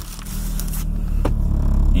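Hands handling and scraping a camera mounted on a car dashboard, with one sharp click a little over a second in. Under it the Mitsubishi Evo's engine rumbles steadily at idle, heard from inside the cabin.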